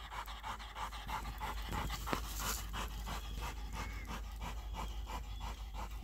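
Plott hound panting hard and steadily, several quick breaths a second, after a fight with a groundhog. A single sharp click about two seconds in.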